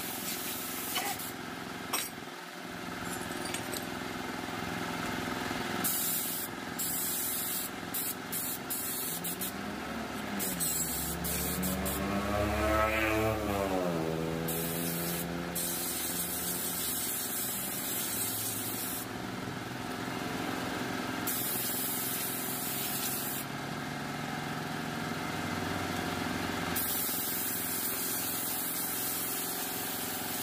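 Compressed-air blow gun hissing in repeated on-off blasts, some short and some a few seconds long, blowing dust out of a scooter's CVT clutch and springs. Near the middle an engine rises and then falls in pitch underneath.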